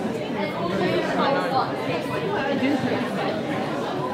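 Many people talking at once in a large room: a steady background of overlapping conversation with no single voice standing out.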